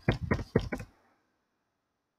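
Keystrokes on a computer keyboard: a quick run of about five sharp taps in the first second, then they stop.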